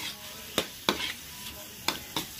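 Chicken and chicken liver sizzling in hot oil in a metal wok while a metal spatula stirs them, with a few sharp scrapes and clacks of the spatula against the pan.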